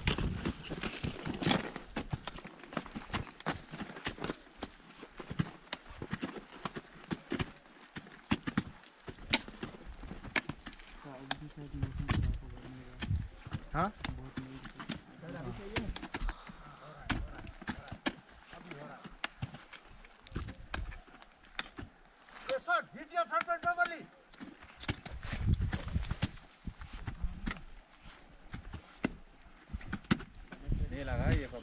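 Ice axe picks and crampon front points striking hard snow and ice in uneven runs of sharp knocks and crunches as climbers kick and swing their way up an ice wall.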